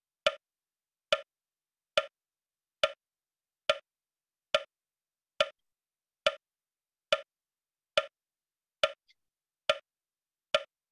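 Metronome clicking steadily with a wood-block tone, a little faster than one click a second, twelve clicks in all, pacing the exhalations of Kapalabhati breathing.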